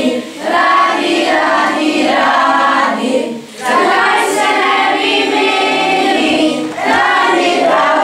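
A group of children singing a song together to electronic keyboard accompaniment, in three phrases with short breaks between them.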